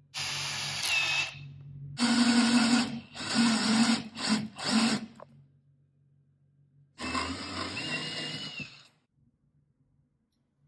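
Cordless drill boring into a pine beam with a spiral auger bit. It runs in bursts: briefly at the start, a longer stretch broken by short stops, then another run near the end.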